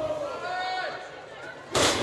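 Faint voices over the arena crowd, then near the end a single loud, sharp slap of a wrestler's right-hand strike landing.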